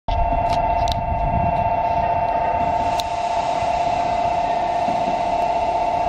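Station platform train-passing warning bell ringing continuously in a steady two-pitched ring, warning that a non-stopping train is about to pass through.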